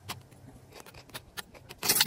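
Scattered soft crackles and rustles of moss and soil being pressed down by a hand inside a glass jar, with a louder rustle near the end.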